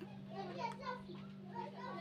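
Faint background voices over a steady low hum.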